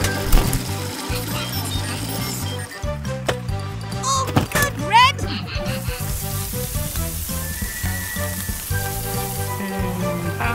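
Cartoon background music with a steady beat under the hiss of water spraying from a fire hose. There is a quick rising whistle-like effect about halfway through.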